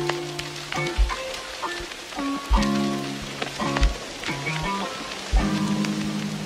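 Background music with a slow beat of deep thumps and sustained notes at several pitches over a steady hiss. The track starts just before this point.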